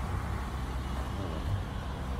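Steady low background rumble with faint voices in it.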